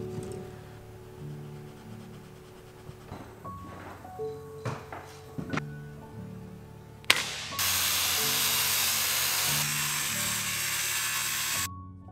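A sharp snap of a chalk line on plywood, then a circular saw cutting a sheet of plywood for about four seconds before it cuts off suddenly, over background music.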